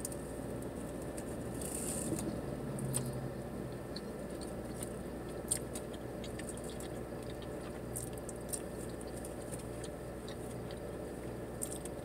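A person chewing a mouthful of breakfast burrito, soft wet mouth sounds with a few sharper clicks now and then, over a steady low hum.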